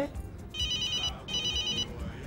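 Telephone ringing: two short electronic trilling rings of about half a second each, with a brief gap between them.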